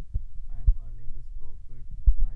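A person talking over a steady low hum, with a couple of short low thumps, the louder one a little under a second in.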